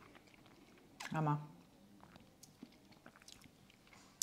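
Faint mouth noises of someone eating frozen chocolate ice cream off a spoon: a scatter of small clicks and smacks.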